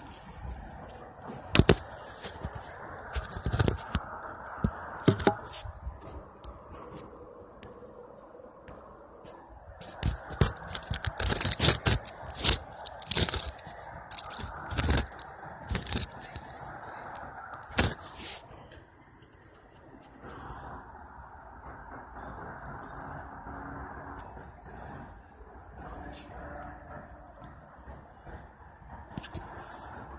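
Handling noise on a handheld phone's microphone: irregular clicks, scrapes and crackles, thickest through the first two-thirds, over a faint steady background hiss.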